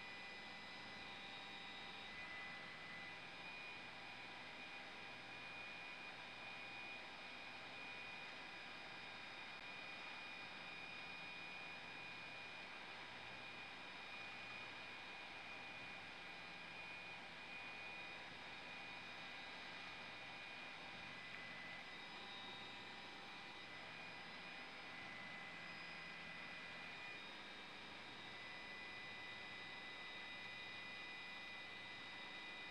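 Faint steady background noise on a raw aerial news feed: an even hiss with a few constant high whines and a faint low hum, no speech.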